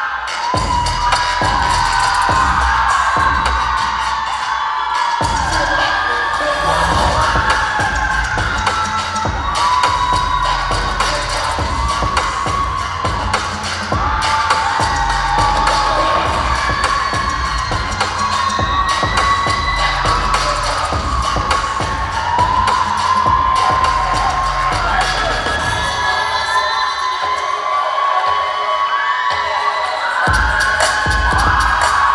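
Hip-hop dance music with a heavy bass beat played over a hall PA, with an audience cheering and shouting over it. Near the end the bass drops out for a few seconds before the beat returns.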